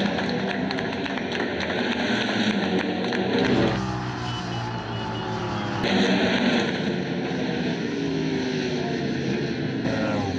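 Ducati Panigale race bikes passing at speed as they cross the finish line, several engines revving and falling in pitch over one another. The sound changes character briefly between about four and six seconds in.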